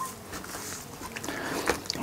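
Faint wet handling sounds with small scattered clicks: gloved hands rubbing olive oil over the skin of whole raw fish.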